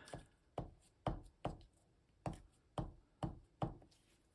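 Glue stick pressed and dabbed onto a small paper strip lying on a sheet over the table: about eight soft, short taps, irregularly spaced, some in quick pairs.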